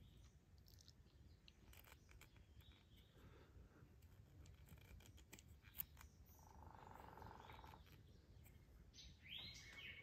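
Near silence, with one soft click about six seconds in and faint bird chirps near the end.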